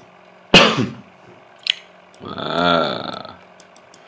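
A man's single sharp cough, then a short click, then a drawn-out low vocal sound with a pitch that rises and falls over about a second.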